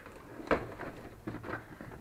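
Handling noise from a bubble-wrapped robot chassis and its cardboard box on a wooden workbench: a sharp knock about half a second in, then light rustling and a few small clicks.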